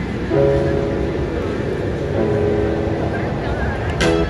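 Intro of a song's backing track: held keyboard chords, one coming in just after the start and a new chord about two seconds in, over a low background rumble, with no drumming yet.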